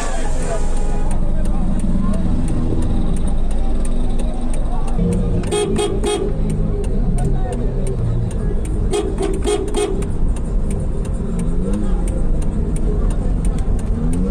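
Car horn honking in two bursts of short beeps, about five seconds in and again about nine seconds in, over a low engine rumble and people's voices, heard from inside a car.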